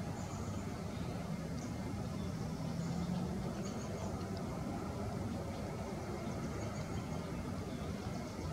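Steady low rumble of distant traffic, with a few faint, far-off high bird chirps.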